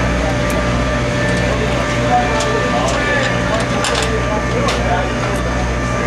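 Indistinct background voices over a steady low mechanical hum, with a few light clicks scattered through.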